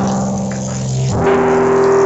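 Keyboard playing held chords, moving to a new chord about a second in.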